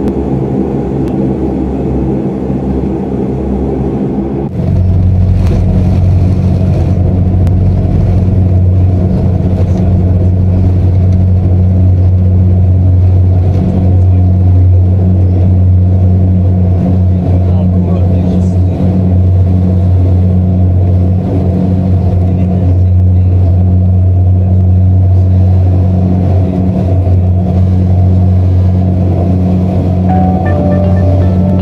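An airliner's engines, heard from inside the cabin, spool up to takeoff power about four and a half seconds in. A loud, steady low drone then carries through the takeoff roll and the climb-out.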